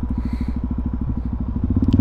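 Suzuki DR-Z400SM's single-cylinder four-stroke engine running at a steady low-rpm pulse under way, getting a little louder near the end.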